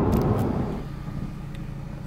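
Road and engine noise inside a moving car's cabin, dropping about a second in to a quieter steady hum.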